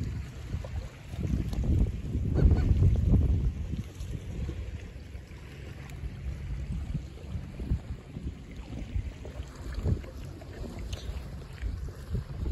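Wind buffeting the phone's microphone in gusts, strongest about two to three seconds in. Through it come short honking calls from gulls flying low over the sea.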